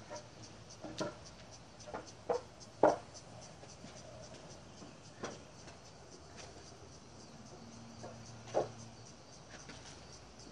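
Lengths of 2x8 pine lumber being set down against each other on a concrete driveway: a series of wooden knocks and clatters, the loudest about three seconds in and another near the end. Insects chirp steadily in the background.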